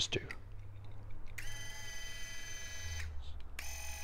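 Small electric linear actuator's DC motor and gearbox running with a steady high whine for about a second and a half, stopping, then starting again about half a second later. It runs only while the momentary switch is held.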